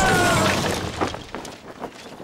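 Cartoon crash sound effect of a wooden ladder falling and breaking, followed by scattered clattering pieces. A held cry cuts off about half a second in.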